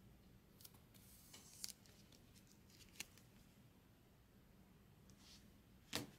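Faint clicks and scrapes of a trading card being slid into a rigid plastic top loader and handled, with a sharper click at the very end.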